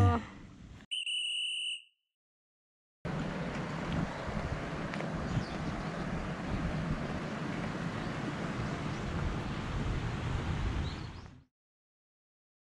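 A short, steady electronic tone with two pitches, like an edited-in sound effect, about a second in and lasting under a second. After a second of silence comes a steady rushing outdoor noise that runs for about eight seconds and is cut off sharply near the end.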